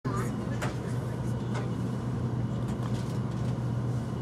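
Cabin noise inside an Odakyu 30000 series EXE Romancecar electric train on the move: a steady low hum with two sharp clicks.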